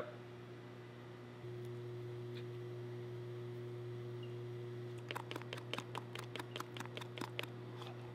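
Metal spatula stirring thick screen-printing ink in a plastic cup. In the second half comes a quick run of short clicking and scraping strokes, about six a second, as the blade knocks round the cup wall. A steady low machine hum runs underneath.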